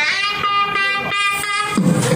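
Music: a shrill, reedy wind instrument playing a melody, holding each note about half a second before moving to the next.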